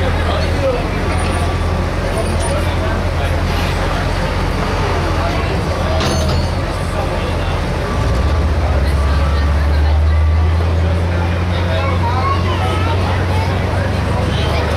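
Voices and crowd chatter over a low, steady truck engine idle; about eight seconds in the engine note shifts and grows a little louder as the pickup is unhooked and moves off. A single sharp click sounds near the middle.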